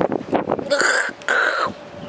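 Two short non-speech vocal sounds from a person, one a little under a second in and the second half a second later.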